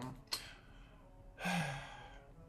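A woman's breathy sigh about one and a half seconds in, with a low falling pitch, after a quick catch of breath near the start.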